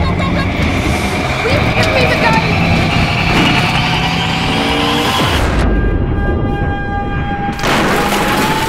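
Film-trailer soundtrack of dramatic music layered over car-chase sound effects of a vehicle in motion. About two seconds before the end, the mix thins to a few held tones, then the full sound comes back.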